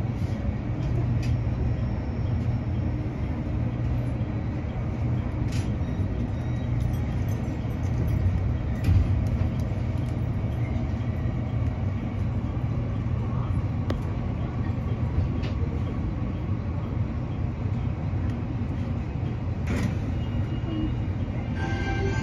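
Steady low hum of a stationary 813 series electric train's onboard equipment as it stands at a platform, with a few faint clicks.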